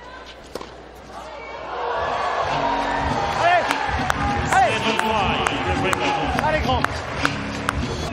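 A single sharp crack of a tennis ball struck off a racquet, then from about two seconds in, loud music mixed with the voices of a crowd.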